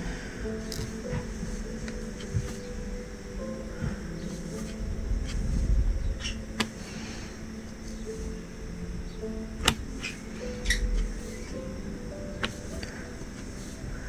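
Soft background music of sustained notes that change in steps. A few faint, sharp clicks scattered through it are a diamond painting pen pressing resin drills onto the canvas.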